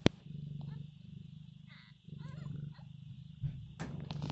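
Mother tabby cat purring steadily over her newborn kittens, the purr rising and falling with each breath.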